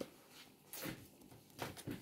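Faint handling of oracle cards on a cloth-covered table: a soft slide about three-quarters of a second in and a few light taps near the end as the cards are moved and gathered.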